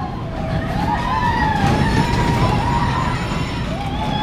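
A steel roller coaster's train running on its track: a steady low rumble with a wavering high tone that glides slowly up and down over it.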